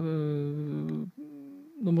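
A man's drawn-out hesitation sound, a steady 'eee' held for about a second, then a softer, shorter hum, before he starts speaking again near the end.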